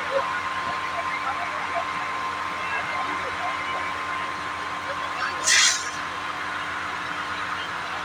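High-pressure fire hose jet rushing steadily over a low, steady machine hum from the pump engine. About five and a half seconds in comes a brief loud hiss, lasting about half a second.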